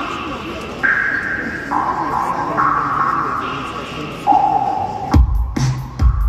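Live darkwave band opening a song over a festival PA: a slow melody of held notes stepping up and down in pitch, then a heavy drum-machine beat with a deep kick coming in about five seconds in. Crowd chatter murmurs underneath.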